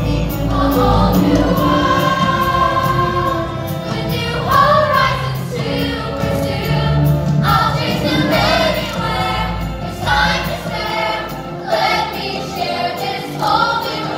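Theatre cast singing the finale number in chorus over musical accompaniment, held notes and phrases changing every second or two.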